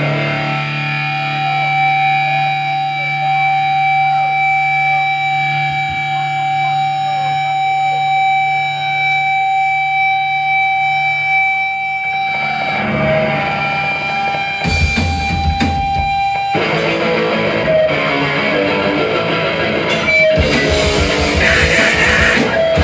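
A live rock band's amplified electric guitar holds sustained, effects-laden tones for about twelve seconds. The rest of the band builds up over a second or two, and the full band, with electric guitar and a drum kit, comes in loudly about fifteen seconds in.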